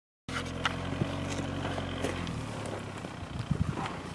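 Volkswagen 1.9 ALH TDI four-cylinder turbodiesel in a Suzuki Samurai running steadily at low revs, fading after about two seconds. A few sharp clicks early on and some low thumps near the end.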